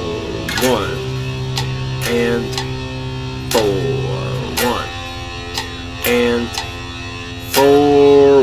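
Electric guitar playing power chords in a slow strummed rhythm at 60 beats a minute, down and up strokes, a chord struck once or twice a second and left ringing between strums.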